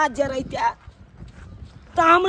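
A man's voice for the first moment, then a quieter stretch with a few soft footsteps on a dirt path.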